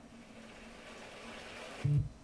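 Rustling of someone moving close to the microphone, growing slowly louder, then a single low thump near the end, like a knock or bump against the camera or mic.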